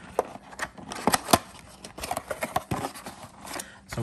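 Cardboard trading-card box being handled and its end flap pulled open: a string of crackles and sharp ticks, the loudest a little over a second in.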